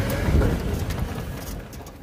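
All-electric John Deere Gator's drive motor and drivetrain running at full current in a short spurt, with a whine rising in pitch and a low rumble that peak about half a second in, then fading as the motor controller drops the vehicle back to a slow crawl. The crawl is the creep mode that a controller fault sets.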